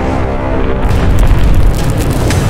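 Cinematic logo-reveal music: a held tonal drone, then a deep boom with sharp crackling hits building to its loudest in the second half.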